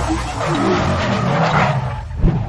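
Intro sound effect of a car tyre screeching in a burnout over a low rumble, the screech building through the middle and falling away near the end.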